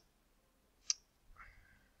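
A single computer-mouse click about a second in, with a faint soft rustle just after; otherwise very quiet.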